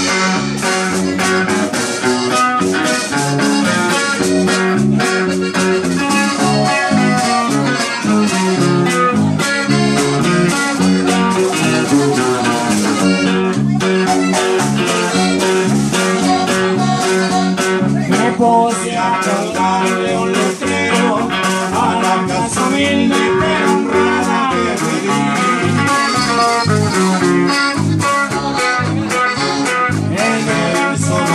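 Live norteño band playing an instrumental passage: accordion melody over strummed bajo sexto and electric bass, with a steady bass rhythm.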